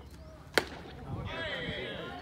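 A single sharp pop of a pitched baseball smacking into the catcher's leather mitt, about half a second in. Voices follow from about a second in.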